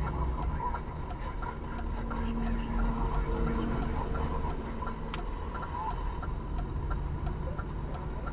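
Steady low engine and tyre rumble of a moving vehicle, heard from inside the cab, with a light tick about every half second.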